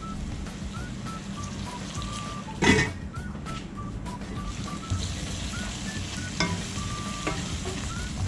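Mixed vegetables and masala paste sizzling in oil in a kadai while being stirred with a spatula, with a sharp clank about a third of the way in and a lighter one later.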